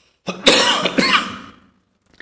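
A man coughing, two harsh coughs about half a second apart.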